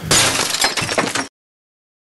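Glass-shattering sound effect of a logo sting: a burst of breaking glass with many small clinks that cuts off abruptly a little over a second in.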